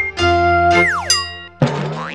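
TV channel logo jingle: held synthesized notes with a cartoon sound effect, a falling pitch glide about a second in, then a sharp hit near the end followed by a wobbling tone.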